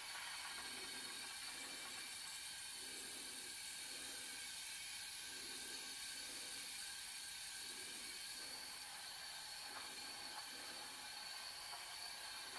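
Steady rushing hiss of air from a powder-coating spray setup, with faint steady tones in it, as bonded chrome powder is applied to small pressed-steel parts.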